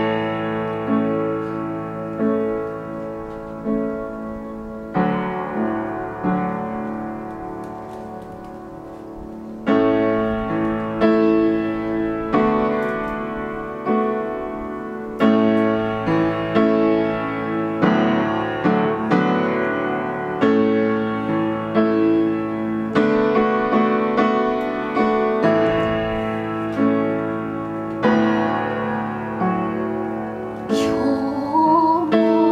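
Solo piano playing a slow introduction in struck chords, each one ringing and fading before the next. It grows softer about six seconds in, then comes back with fuller, louder chords about ten seconds in.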